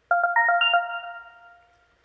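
Short electronic chime: about six quick bell-like notes stepping up in pitch within the first second, then ringing out and fading. It is the cue that opens a debater's timed speaking turn.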